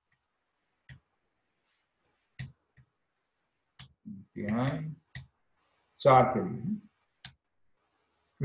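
Computer keyboard keystrokes: a handful of separate key clicks, spaced a second or more apart. Two short stretches of a man's voice come near the middle.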